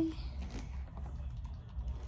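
Faint scattered clicks and taps of plastic dolls being handled, over a low steady hum, after the tail of a child's voice at the very start.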